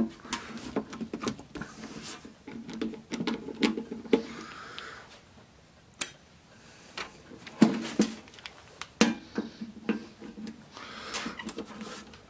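A screwdriver backing out the screws of a cassette deck's sheet-metal cover, then the cover being handled: scattered clicks and scrapes of metal on metal, with a few sharper clicks in the second half.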